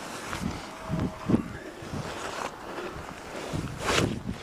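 Climbing noise: gloved hands and clothing scraping and brushing against tree bark, with irregular knocks and rustles close to the camera and a louder scrape near the end.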